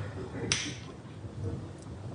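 A piece being taken out of a slice of biscuit-layered custard dessert: one short, sharp click or crunch about half a second in, over a faint low hum.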